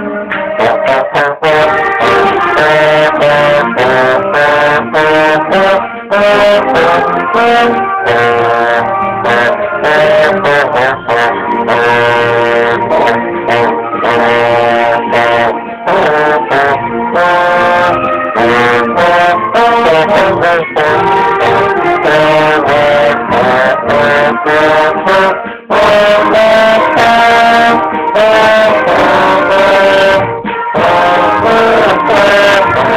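Concert band music, with a trombone played right beside the microphone standing out over the ensemble as the notes move in quick succession. There is a brief break in the sound about 25 seconds in.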